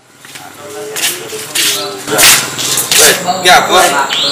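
Speech: people talking in conversation, the sound fading in from silence at the start.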